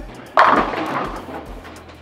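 A Black Hammer Pearl urethane bowling ball crashing into the pins about half a second in, the pins clattering and dying away over about a second: a strike.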